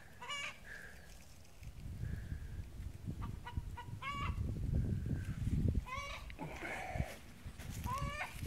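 Short, high-pitched bird calls, like fowl clucking, heard about four times, over a low rumble.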